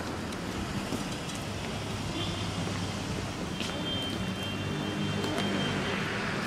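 City street traffic noise: the steady hum of car engines and tyres on the road. A thin high tone comes in twice, briefly about two seconds in and longer from just under four seconds in.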